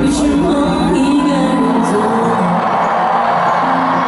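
A pop song performed live in a large hall, a female singer's voice over the band, recorded from the audience. The deep bass drops out about a second and a half in.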